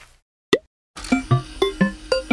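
A single short cartoon 'plop' sound effect about half a second in, then, from about one second in, bright jingly children's intro music: quick plucked bell-like notes, about four a second, over a held tone.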